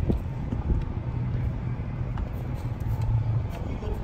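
A steady low rumble, like a motor vehicle engine idling, with faint background chatter.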